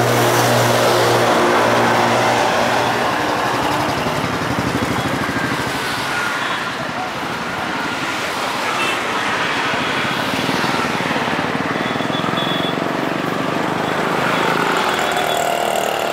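Motorcycle engines running in a crowded lot: one engine hums steadily at idle for the first three seconds or so, then a busy mix of bike and traffic noise continues, with people talking.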